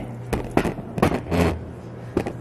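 A wooden tamper pressing shredded, salted cabbage down into a glass mason jar: several short squishing crunches and knocks, over a steady low hum.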